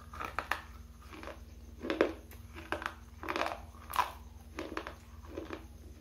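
Mouth sounds close to a microphone: crunchy bites and chewing of a dry, hard bar, about seven sharp crunches coming irregularly, with a steady low hum underneath.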